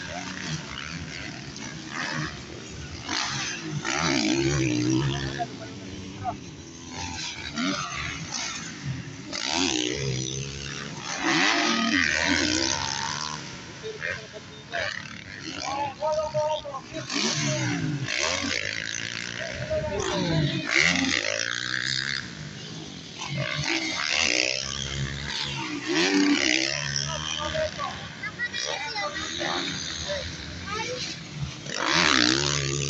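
Motocross dirt bikes racing round the track and over the jumps, their engines revving over and over, the pitch rising and falling as the riders open and close the throttle.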